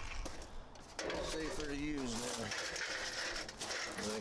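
Clicks and rattles of a metal sawhorse and a wooden board being handled and set down on gravel, with a man's drawn-out voice briefly in the middle.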